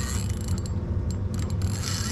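Spinning reel being cranked fast, its gears and handle making a steady rapid ticking whir as line is wound in.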